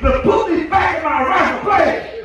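A man preaching in a loud, shouted voice, in drawn-out phrases whose words are hard to make out.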